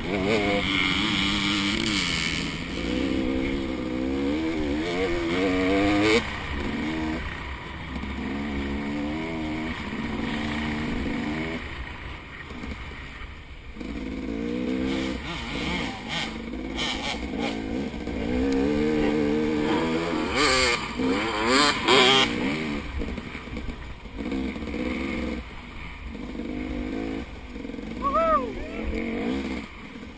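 KTM 250 XC two-stroke dirt bike engine under race throttle, its revs climbing and falling again and again with gear changes and on and off the gas, with wind noise and occasional knocks from the rough trail.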